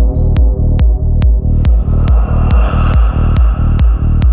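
Progressive dark psytrance: a steady four-on-the-floor kick drum at about two and a half beats a second with a rolling bassline pulsing between the kicks. A noisy synth texture swells up and fades away in the middle.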